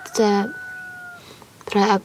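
A woman speaking Norwegian in short phrases, with a faint steady high tone behind her voice that fades out about a second in.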